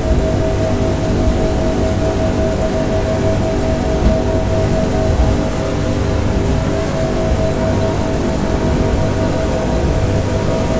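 Twin 350-horsepower outboard engines running steadily near full throttle at about 5,800 rpm. They make a constant drone with a held high tone over a low rumble.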